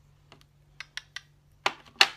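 A handful of short, sharp clicks and taps, about five or six spread unevenly, the loudest near the end.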